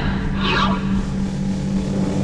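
A whoosh sound effect sweeping past about half a second in, over a steady low drone in the soundtrack music.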